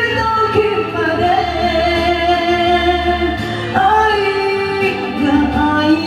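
A woman singing a slow ballad into a handheld microphone over karaoke backing music, holding long notes; the melody steps up to a higher note about two-thirds of the way through.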